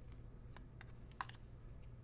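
Faint, irregular light clicks of trading cards being slid off a stack and tapped down on the table.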